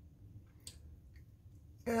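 Two faint, sharp clicks, about half a second apart, as jeweler's pliers work a loop in brass rod, over a low steady hum.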